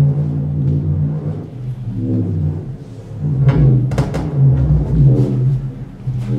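Live experimental electronic music from a laptop ensemble, played by gesture with a data glove and controllers. Deep sustained drones carry throughout, easing briefly about halfway, with sharp percussive hits rising over them in the second half.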